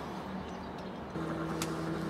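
Faint background noise, then a steady low hum starts about a second in, with a single click shortly after.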